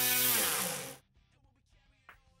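DualSky XM4010MR-6.5 brushless motor with an 11-inch propeller running at high throttle on a test bench, then throttled off. Its pitch falls and the sound dies away about a second in, leaving only a few faint clicks.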